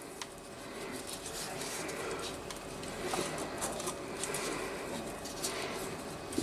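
Faint small clicks and rustles of fishing tackle being handled: a swivel and leader fed into a PVC bait mold over a lead weight.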